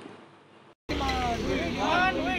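A narrator's voice fades out and there is a brief silence. Just under a second in, outdoor sound cuts in: people's voices over a steady low rumble of street traffic.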